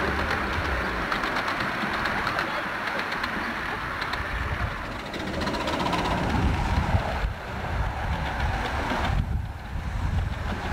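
A 10¼-inch gauge miniature steam locomotive, a model of an LB&SCR Terrier 0-6-0 tank engine, running with its train of riding cars, its wheels rumbling over the track. The rumble grows as the train draws nearer in the second half.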